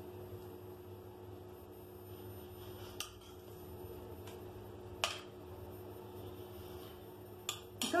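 A metal spoon mixing salad in a ceramic bowl, with a few sharp clinks of spoon on bowl about three and five seconds in and twice near the end, over a low steady hum.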